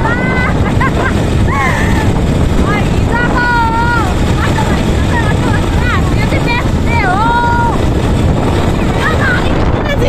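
Auto-rickshaw running under way, a steady engine-and-road rumble with wind buffeting the microphone. Over it, women's voices call out several times in long, wavering tones.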